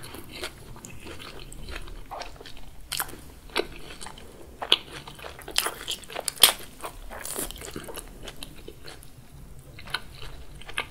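Bites into a crumb-coated Korean corn dog, its fried crust crunching in a string of sharp crackles, loudest in the middle of the stretch, with chewing in between.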